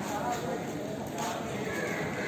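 Voices of people talking at a distance, with a couple of short sharp clicks or taps.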